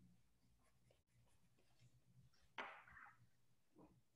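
Near silence: faint room tone over a call connection, with one short soft noise about two and a half seconds in.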